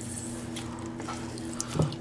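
A lime half squeezed by hand over a ceramic bowl: faint squishing of the fruit and juice dripping into the bowl, over a steady low hum.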